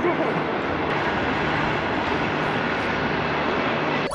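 A short two-car passenger train crossing a long railway viaduct, heard as a steady, even noise without breaks.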